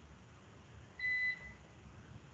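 A single short, steady electronic beep about a second in, lasting about half a second, over a faint room hush.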